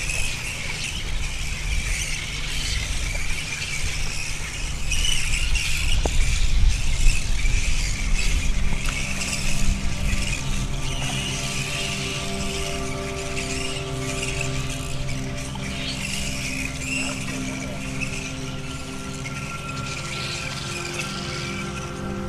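A colony of flying foxes (fruit bats) screeching and chattering without a break in high-pitched calls. A sustained music chord of held tones comes in about eight seconds in and stays to the end.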